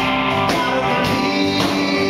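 Live rock band playing: electric guitar and drum kit with a man singing, drum hits landing about once a second.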